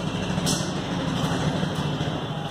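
A steady low mechanical drone, like an engine running, holds throughout. About half a second in there is a brief faint scratch of a marker writing on a whiteboard.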